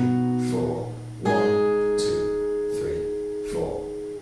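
Steel-string acoustic guitar, capoed at the sixth fret, playing the chord changes of a chorus (C, F, D power chord): one chord rings at the start, a new chord is struck about a second in and left to ring, fading near the end.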